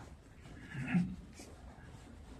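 A quiet room with one brief, low murmur of a person's voice about a second in.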